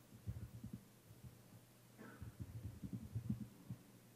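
Faint, dull laptop keystrokes picked up through the lectern microphone, in two short runs, the second a little before halfway through and lasting nearly two seconds. The presenter is typing shell commands. A steady low hum runs underneath.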